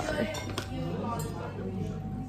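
Cutlery and crockery clinking at a dining table: a few light, sharp clinks of metal against plates.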